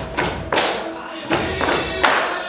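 A song with singing and sharp percussion hits, about two each second.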